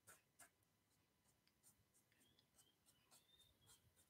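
Near silence, broken by many faint, irregular scratches of a watercolour wisp brush's bristles flicking across paper in short strokes.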